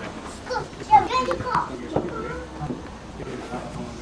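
Indistinct voices of several people talking, some of them high-pitched, with a short knock about a second in.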